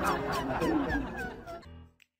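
Background music with a steady beat and gliding pitched notes, fading out and stopping near the end.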